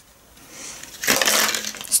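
Small plastic packaging and plastic razor cartridge heads rustling and crackling as they are handled. Faint at first, growing louder from about a second in.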